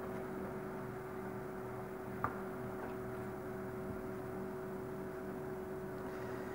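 Steady background hum with two faint steady tones and a light hiss, broken once by a short click about two seconds in.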